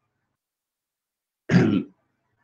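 Dead silence for about a second and a half, then a man clearing his throat once, briefly.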